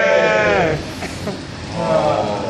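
A voice chanting a marsiya, a Shia elegy, holds a long note that falls in pitch and breaks off about two-thirds of a second in. Quieter voices follow, and the chanting starts again near the end.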